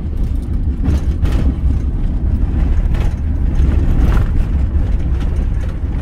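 Camper van driving on a dirt road, heard from inside the cab: a steady low rumble of engine and tyres, with a few faint rattles.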